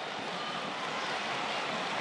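Steady rushing background noise of a soccer match broadcast's pitch-side audio, even and without any distinct kicks, whistles or shouts standing out.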